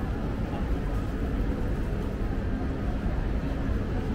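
Steady city street ambience: an even low rumble of urban background noise.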